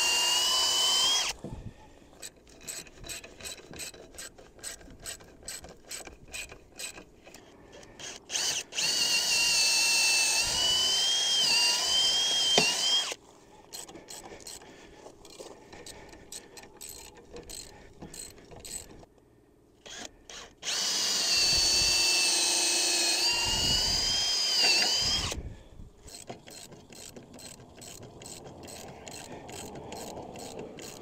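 Cordless DeWalt drill running into a timber beam at a steel bracket in three runs of a few seconds each, its whine sagging under load. Between the runs, a hand socket ratchet clicks rapidly as the fasteners are tightened.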